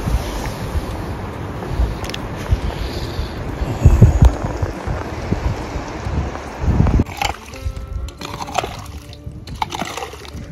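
A rumbling noise with low bumps for about seven seconds, then a short passage of music with a few held notes.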